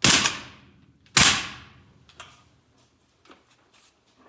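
An AK-pattern rifle fitted with a Magpul Zhukov folding stock is banged down hard onto a concrete floor twice, once at the start and again about a second later. Each whack is a sharp crack that rings off briefly. A few faint clicks and rattles from handling the rifle follow.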